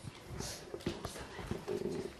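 Classroom shuffling: scattered light knocks and clicks from children moving at wooden desks and chairs, with a faint voice near the end.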